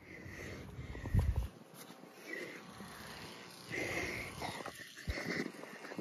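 Faint breathing and sniffing close to the microphone, with a brief low rumble on the microphone about a second in and a soft knock near the end.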